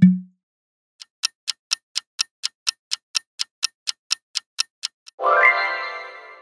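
Clock-ticking countdown sound effect, about four even ticks a second for some four seconds, ending in a bright chime that rings on and fades. A short low thud sounds at the very start.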